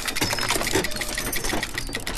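Keyboard typing sound effect: a rapid, continuous run of key clicks.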